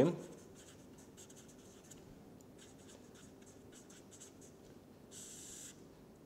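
Felt-tip marker writing on paper: faint short scratching strokes as letters are written, then one longer, louder stroke near the end as the words are underlined.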